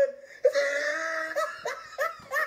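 A boy laughing: one long held high note starting about half a second in, then a couple of short bursts near the end.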